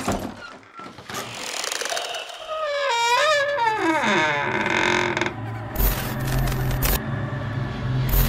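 Horror intro sound design: a sudden hit at the start, then a wavering wail that glides downward, then a low rumble with harsh static hiss from about six seconds in.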